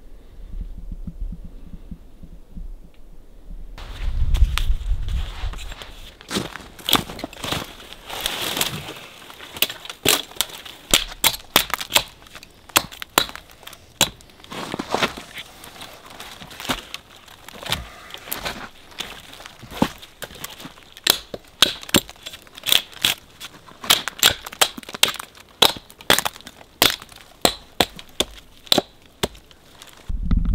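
A hatchet limbing a small felled spruce: a long run of sharp chops and snapping, crackling twigs that starts a few seconds in and comes faster and steadier in the second half.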